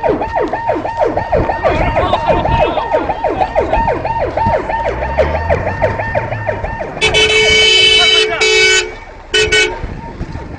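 Emergency vehicle siren sounding a fast yelp, its pitch falling over and over, three to four times a second. About seven seconds in it stops for a long vehicle horn blast of nearly two seconds, then two short horn blasts near the end.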